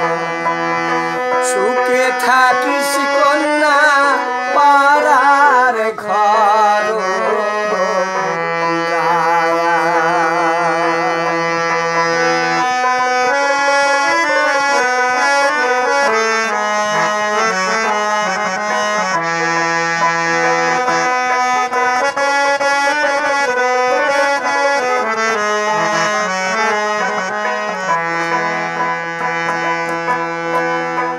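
Bhawaiya folk song: a man singing with wavering, ornamented held notes over a steady low drone, accompanied by a plucked dotara.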